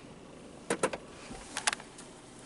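A few short, soft clicks and taps from a hand-held camera being handled inside a car, over quiet cabin background noise.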